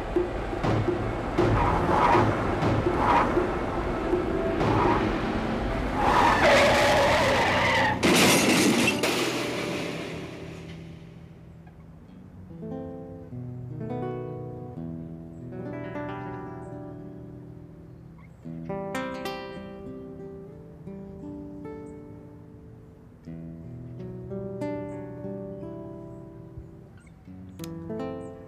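A car crash scene's effects under dramatic music: a loud, noisy crash with impacts and what sounds like breaking glass about six to eight seconds in. It fades out, and from about eleven seconds on slow, sparse plucked acoustic guitar music plays.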